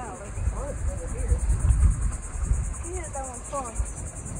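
Steady, high-pitched insect chorus with a fast, even pulse, over a low, uneven rumble.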